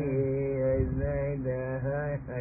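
A man's voice chanting a melody in long held notes that change pitch about every half second, over a steady low hum, with the sound muffled by the recording's narrow range.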